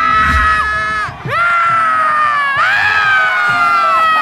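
Two men yelling in long, drawn-out cries of pain after having their calves kicked. The cries break off briefly about a second in and again about two and a half seconds in, then start again.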